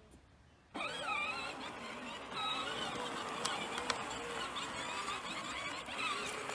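Peg Perego Case IH Magnum 12-volt ride-on toy tractor's electric drive motor and gearbox whining as it pulls away in first gear, starting suddenly under a second in and running steadily.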